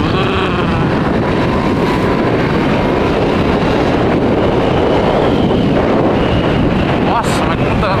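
Kasinski Comet GTR 650 V-twin motorcycle riding along at speed on its stock exhaust, its engine mostly buried under steady wind noise buffeting the helmet-mounted microphone.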